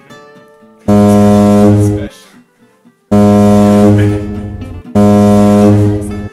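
Three loud blasts of a low, steady, buzzing horn-like tone, each a second or two long, with short gaps between them.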